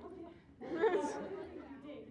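Indistinct voices talking, with a louder stretch of speech about halfway through.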